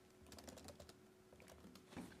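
Faint typing on a laptop keyboard: light, quick key taps in short runs.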